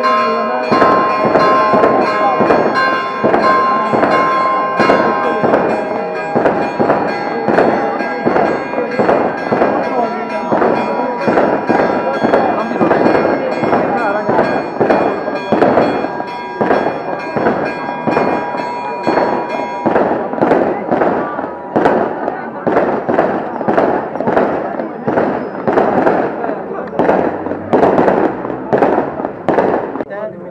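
A rapid string of firework bangs, about two a second for the whole stretch, with church bells ringing underneath and stopping about twenty seconds in.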